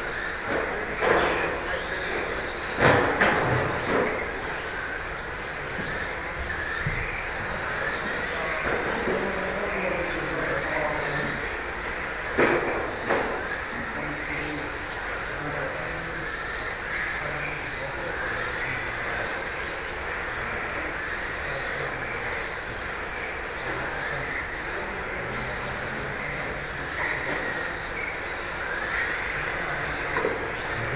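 A pack of 1:10 electric RC GT cars with 17.5-turn brushless motors racing, their motors whining up and down in pitch over and over as they accelerate and brake through the corners. A few sharp knocks in the first seconds and again about twelve seconds in.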